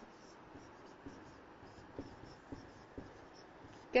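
Marker pen writing on a board: faint scratching strokes with a few light clicks as the tip touches down.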